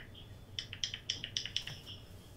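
Smartphone giving a quick series of short, high electronic chirps, about four a second, while it is tapped and set up.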